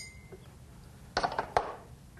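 The ring of a glass mug, struck by a metal bar spoon while stirring, dying away at the start, then two short knocks a little over a second in.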